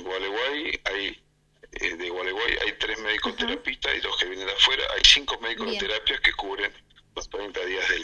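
Speech over a telephone line: one voice talking steadily, with a short break about a second in.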